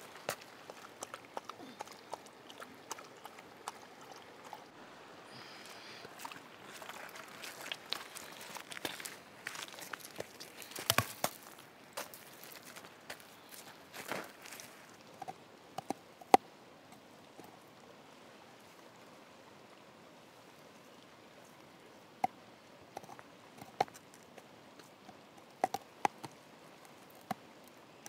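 Faint crunching and clicking of river pebbles as a dog walks and noses about on a gravel bar, with a few sharper knocks of stone. A quiet gap falls in the middle.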